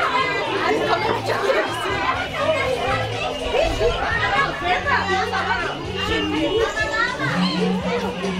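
Many voices chattering at once, children's among them, over background music with steady bass notes.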